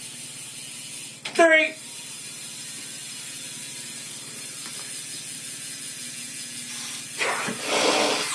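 Bicycle wheel spinning after the pedals are cranked by hand, with the freewheel hub ticking steadily. A short vocal sound comes about a second and a half in, and a louder burst of noise comes near the end.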